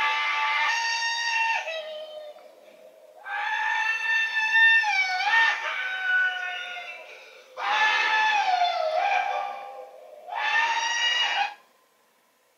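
A man's long whooping yells from a film soundtrack, played through a television's speakers: four drawn-out cries with sliding pitch. The sound cuts off abruptly just before the end.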